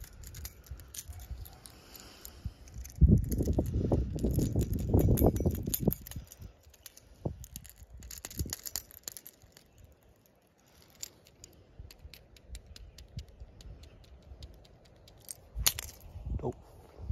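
Metal treble hooks and spinning tail of a plastic Whopper Plopper-style topwater lure clicking and jangling as it is handled, with many light ticks. A few seconds in there is a stretch of low rumbling handling noise.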